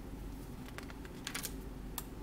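A few light clicks of a computer keyboard being typed on, some in quick pairs, over a low room hum.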